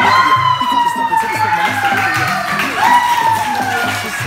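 Children's voices shouting a long, drawn-out cheer that falls slowly in pitch, twice, the second cry starting near the end, over background music with a steady beat.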